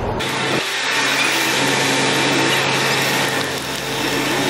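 Steady, fairly loud mechanical noise from a parked bus running close by, mostly hiss with a faint steady hum under it; it comes in suddenly just after the start.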